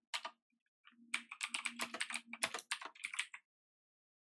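Typing on a computer keyboard: a quick run of keystrokes that stops shortly before the end.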